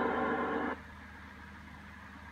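A recorded voice message playing through a laptop speaker, a held voice that cuts off abruptly under a second in, leaving only a low steady hum.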